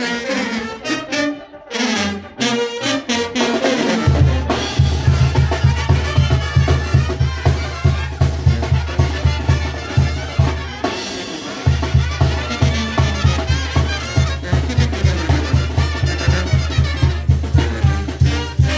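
A live Mexican brass band plays a dance tune, with trumpets and trombones over a tuba and drums. The low bass beat comes in about four seconds in, stops briefly near the middle, then carries on steadily.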